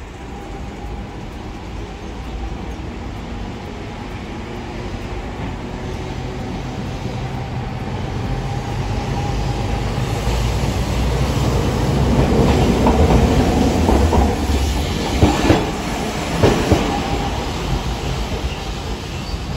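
A Hiroshima Electric Railway streetcar running on street track, its rumble growing louder as it approaches, then a few sharp clacks of its wheels over the track about three-quarters of the way through.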